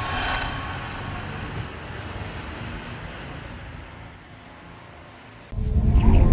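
A rushing sound effect from a TV ad's outro, fading away steadily over about five seconds. About five and a half seconds in, a sudden loud deep hit starts the next ad's logo sting.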